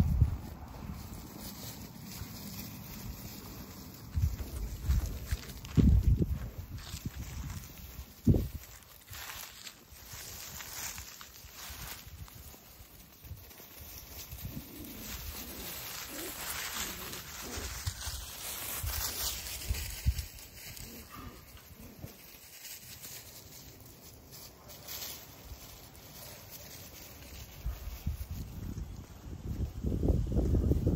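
Footsteps and small paws rustling through dry grass and fallen leaves as puppies scamper about. A few low thumps hit the microphone between about four and eight seconds in.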